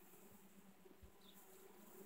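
Faint, steady low hum of honeybees swarming over a frame lifted from an open hive.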